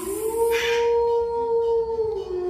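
A voice holding one long steady note, sliding up at the start and dipping down near the end.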